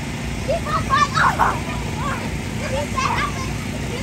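Several children shouting and calling out during play, with a louder burst of shouting about a second in, over a steady low rumble.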